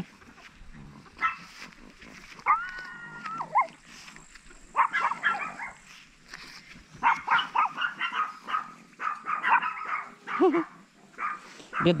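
Chihuahuas yipping and whining while puppies play-fight. There is a long sliding whine about two and a half seconds in, and a run of quick yips in the second half.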